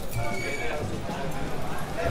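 Footsteps of a group walking on a paved street, a light patter of sandals and flip-flops, with indistinct voices and a low rumble.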